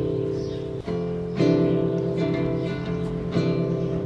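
Background music: acoustic guitar playing strummed chords, with the chord changing a few times.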